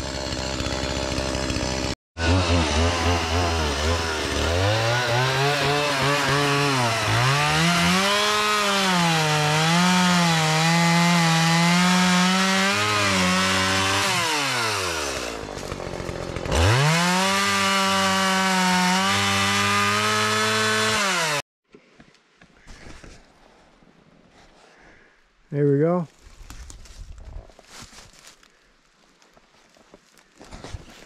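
Chainsaw cutting through a fallen tree, running at high revs with its pitch sagging and recovering as the chain bites into the wood; partway through, the throttle drops off and is opened up again. The saw cuts out suddenly about two-thirds of the way in, leaving a quieter stretch with one brief loud sound a few seconds later.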